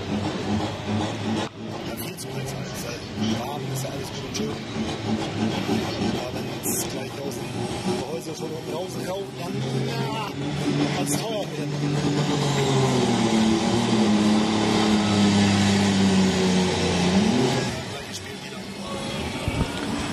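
Turbocharged diesel engine of an International pulling tractor running at high revs under load as it launches against the sled on a long-slipping clutch. Its pitch climbs over several seconds, then drops sharply near the end.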